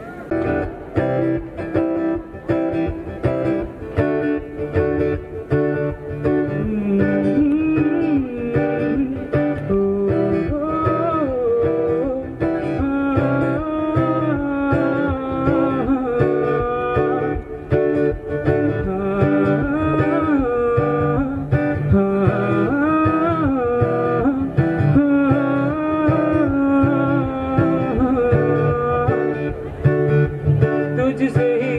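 A male solo vocalist sings a Hindi song into a microphone through stage PA speakers, over a guitar-led instrumental accompaniment. The accompaniment plays from the start, and the sung melody comes in a few seconds in.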